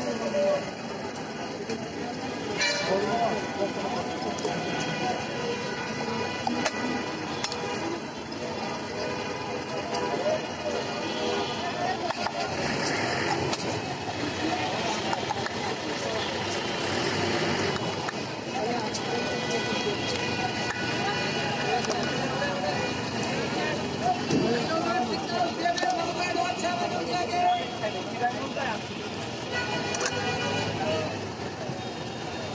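People talking over continuous busy street background noise.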